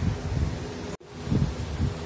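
Wind buffeting a phone's microphone in low, irregular rumbling gusts. The sound cuts out suddenly for an instant about a second in.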